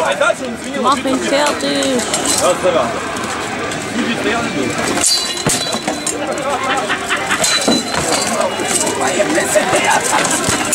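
Armoured full-contact sword fighting: swords striking shields and steel plate armour in irregular metallic clangs and knocks, the sharpest about halfway through. Indistinct voices of a watching crowd chatter throughout.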